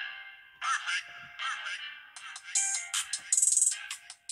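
Music playing through the tiny built-in speaker of a SOYES 7S+ credit-card-sized phone. It sounds thin and tinny with no bass: a melody at first, then a fast beat from about halfway.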